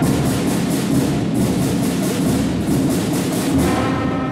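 School concert band playing, with percussion striking a fast steady beat of about five or six hits a second over sustained low notes from the winds and brass.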